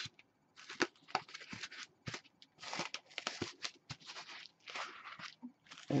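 Cling film rustling and crinkling in irregular bursts as it is pulled, wrapped around a foam block and smoothed down by hand.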